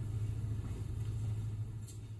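A steady low hum, with one faint click near the end.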